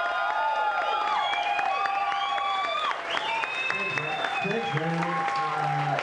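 Audience applauding and cheering, with long shrill whistles through the first half; a man's voice joins near the end.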